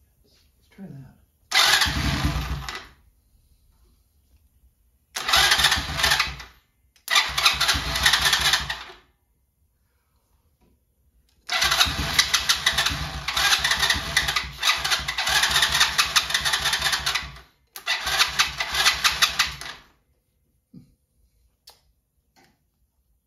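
Small engine of a Chinese four-wheeler (ATV) cranking in five separate start attempts, the fourth the longest at about six seconds. Each burst cuts off and the engine does not keep running.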